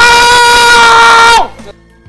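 A man's loud, long call shouted through cupped hands, held on one steady pitch for about a second and a half before it trails off and falls in pitch, calling the group into the circle.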